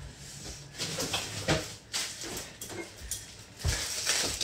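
Scattered knocks and rustles of someone rummaging through kitchen storage for food and handling a package of taco shells.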